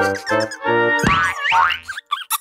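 Bouncy children's cartoon music, then about a second in a wobbling cartoon sound effect whose pitch slides up and down several times, marking the cardboard box turning into a machine.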